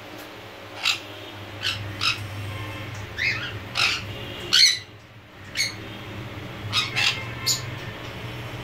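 Jandaya conures giving short, sharp squawks, about ten over eight seconds, the loudest one just past the middle.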